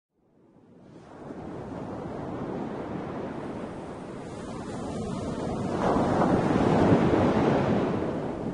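Sea waves washing as a steady surf noise, fading in from silence over the first second and swelling louder in the second half.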